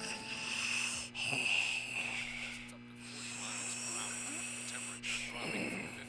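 A hissing, wheeze-like noise that swells and fades, over a steady low hum, with brief breaks about a second in and again near the end.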